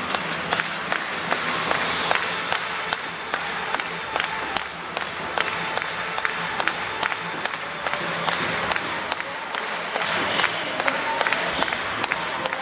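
Football stadium crowd noise with music over the public-address system, cut by a sharp, even beat about two to three times a second, rhythmic clapping or a percussive beat.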